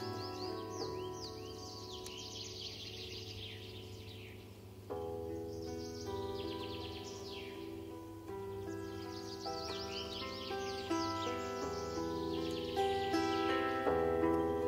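Bandura being plucked slowly, its notes ringing on, with fresh notes struck about five seconds in and again several times later. Wild birds sing over it in repeated bursts of high, falling chirps.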